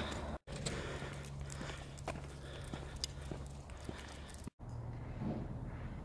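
Faint footsteps of a person walking on a paved road: small irregular ticks over a low steady hum. The sound cuts out briefly twice.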